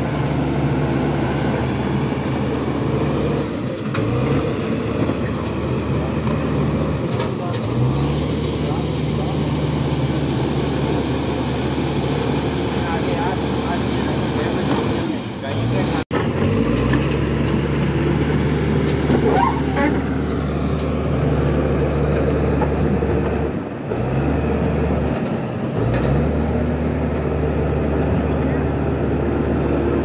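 Komatsu crawler bulldozer's diesel engine running steadily under load as it pushes earth and rock. Its note dips and picks back up several times, and it cuts out briefly about halfway through.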